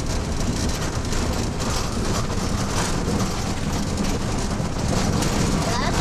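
Steady engine and road noise of a car driving along a town street, heard from inside the cabin.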